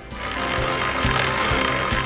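TV programme's theme jingle playing over its logo bumper: electronic music with held notes under a swelling hiss, punctuated by a few sharp beat hits.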